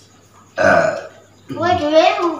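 A person burping once, a loud rough belch of about half a second, shortly after the start. A voice follows near the end.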